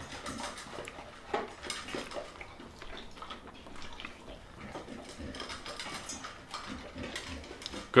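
Someone chewing a mouthful of steamed fish, with scattered light clicks of chopsticks against a dish.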